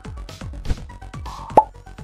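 Electronic background music with a steady fast beat, and a short rising pop sound effect about a second and a half in.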